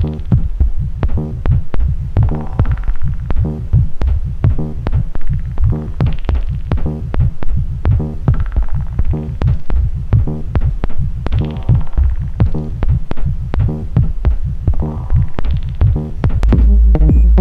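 BugBrand modular synthesizer playing a rhythmic electronic groove: a heavy bass pulse under quick repeating clicks, with a buzzy pitched tone that turns brighter every few seconds as the Morphing Terrarium wavetable oscillator is switched between wavetables.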